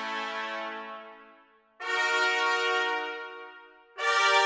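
Spitfire Audio Abbey Road One Thematic Trumpets, a sampled trumpet ensemble, playing marcato chords. A held chord fades away, then a new accented chord comes in just under two seconds in and dies away.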